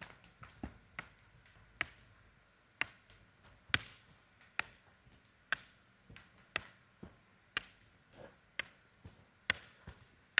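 Palms slapping a hardwood gym floor during a handstand walk: sharp slaps about once a second, with a few quicker, lighter ones at the start as the hands land on the kick-up.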